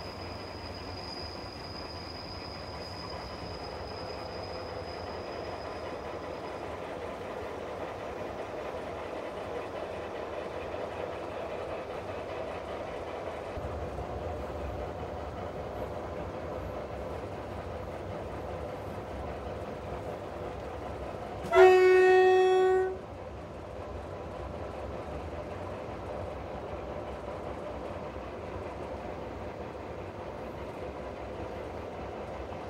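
Harzkamel diesel-hydraulic narrow-gauge locomotive running along the track with a steady engine and wheel noise. About two-thirds of the way through comes one loud horn blast, rising briefly in pitch as it starts and lasting about a second and a half.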